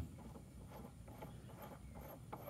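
Quiet background with a few faint, soft clicks from a steel axle nut and portal gear being handled.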